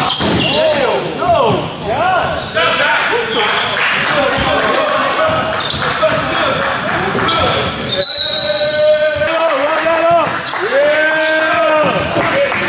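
A basketball bouncing on a hardwood gym floor, with players and spectators shouting and calling out in a large, echoing hall.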